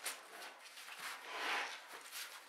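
Handling noise of a 5.11 Rush 12 nylon backpack being turned around on a wooden table: a light click near the start, then a soft rustle of fabric and straps about a second and a half in.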